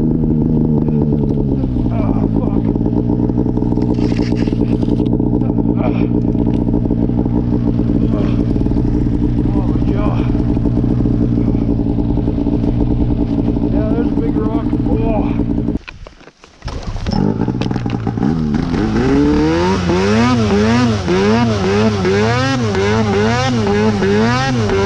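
Arctic Cat two-stroke mountain snowmobile engine. It drops from revs to a steady idle about a second in and runs there. After a brief break it comes back, and from about two-thirds of the way in it is revved up and down over and over as the sled works out of deep snow.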